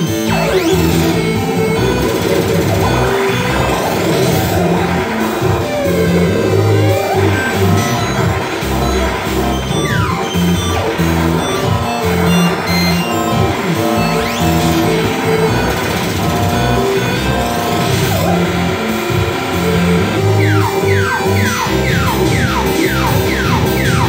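Loud live experimental electronic music played from an arcade-button controller through a mixer: a dense wash of held low tones and noise with pitch glides sweeping up and down, and a quick run of falling zips near the end.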